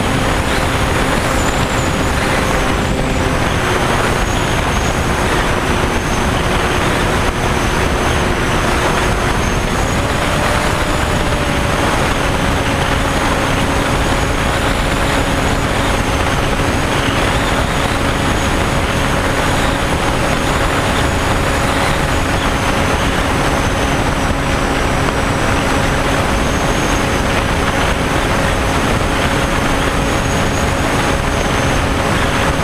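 Model airplane's motor and propeller running steadily, picked up by the onboard camera under heavy wind rush, with a high whine over the hum. The motor pitch drops slightly about three to four seconds in and comes back up about ten seconds in.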